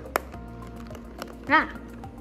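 Fingers working a hard clear plastic display case: one sharp plastic click just after the start and a few small ticks about a second in. Faint background music is held underneath, and there is a short 'ah' about a second and a half in.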